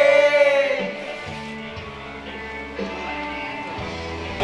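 Music with a man singing into a microphone: a long, wavering held note that ends about a second in. Softer music follows.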